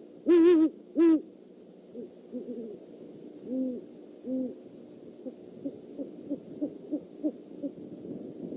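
Great horned owl hooting: two loud, deep hoots in the first second or so, then softer hoots, ending in a quick run of short hoots about three a second.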